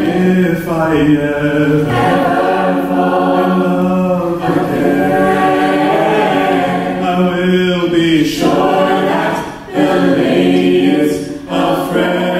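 Mixed-voice a cappella group singing a slow R&B ballad in close harmony, the group holding sustained chords under a male lead voice, with short breaks between phrases near the end.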